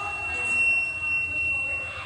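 A single high, steady pure tone held for about three seconds, loudest through the middle and fading out near the end, over faint voices.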